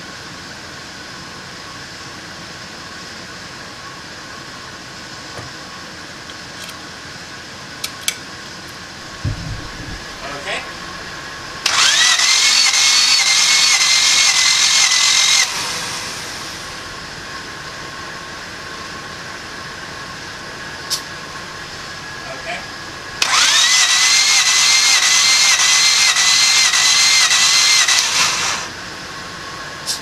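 Starter motor cranking a 1994 Honda Civic's D16Z6 engine twice, about four and five seconds each, without it firing, for a compression test with the injectors unplugged. The starter whine rises as it spins up, then wavers evenly with each compression stroke.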